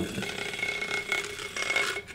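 Handheld battery-powered milk frother whirring steadily in a glass mason jar, whisking matcha powder into water.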